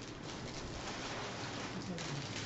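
Rustling and crackling of packaging and cardboard being handled as pre-cut craft pieces are pulled out of a box.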